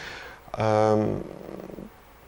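A man's drawn-out hesitation sound: a level, held 'eee' of about half a second that fades into a quieter, rough buzz of the voice before stopping.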